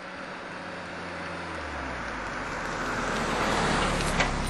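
A rushing noise with a low rumble, like a road vehicle, growing steadily louder.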